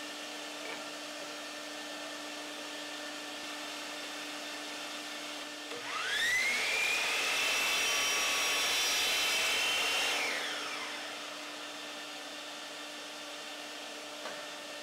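Bosch compact miter saw spinning up with a quickly rising whine about six seconds in, running steadily for about four seconds as it cuts a 45-degree miter in a pine strip, then winding down. A steady machine hum runs underneath throughout.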